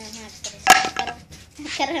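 A single sharp knock with a short ringing tail about two-thirds of a second in, with a child's voice around it.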